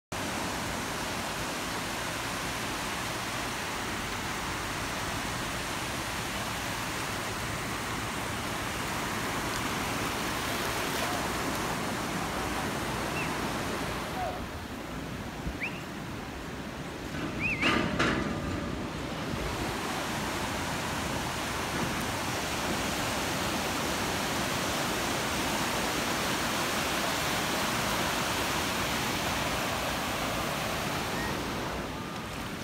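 Surf washing up on a sandy beach, a steady hiss of water over sand. About halfway through the hiss drops for a few seconds, and a high-pitched voice sounds briefly in short calls.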